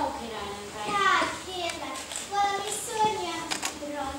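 A child speaking.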